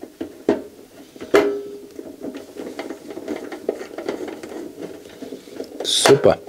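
A hand screwdriver driving a screw into the sheet-metal case of a CD player: a sharp click, then a louder click with a short metallic ring about a second and a half in, followed by steady scratchy ticking as the screw is turned.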